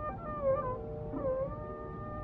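Carnatic music in raga Mukhari from an old radio recording: a melody line gliding between notes over a steady tambura drone, with tape hiss and a dull, narrow sound.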